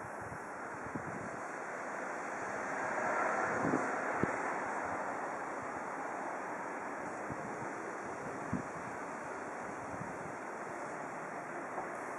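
Wind blowing across the microphone: a steady rushing that swells for a second or two about three seconds in, with a few faint knocks scattered through it.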